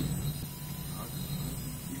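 Steady low hum of office background noise with no distinct event, the kind of room tone that computers and ventilation make.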